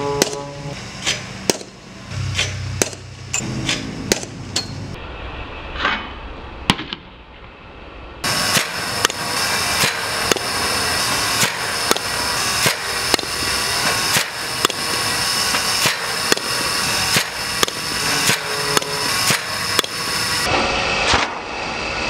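Fastpitch softball bat hitting pitched balls again and again in batting practice: sharp cracks about a second apart, over a steady background hiss that changes abruptly about eight seconds in.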